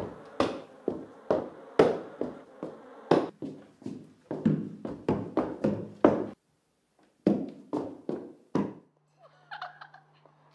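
Heavy footsteps thudding on wooden floorboards, about two a second, stopping briefly about six seconds in and then picking up for a few more steps. A faint low steady hum comes in near the end.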